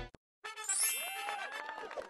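A ringing, chime-like ding starts about half a second in, after a short silence.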